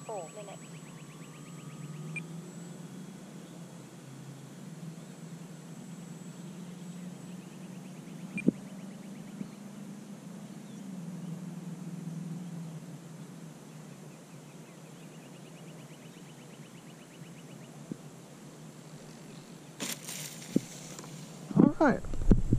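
Low-level steady outdoor background noise, with a single sharp click about eight seconds in and a brief rustle near the end.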